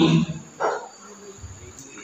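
A pause in a man's amplified speech: his voice trails off, one short spoken sound comes about half a second in, then faint room noise with a thin high hiss.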